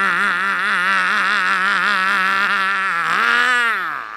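A man's voice holding one long, wavering note in a mock preacher's growl, which bends and falls away about three seconds in.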